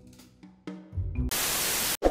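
Background music fading out with a last note, then a loud burst of static hiss, an editing transition effect, lasting under a second and cutting off abruptly.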